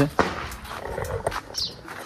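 A dog barking, one short loud bark just after the start, and a bird's high, falling chirp later on.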